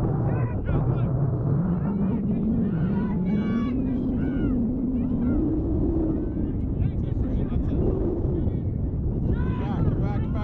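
Players and spectators shouting across a lacrosse field, heard at a distance over a steady low rumble. A low drone rises slowly in pitch over the first six seconds, then dips.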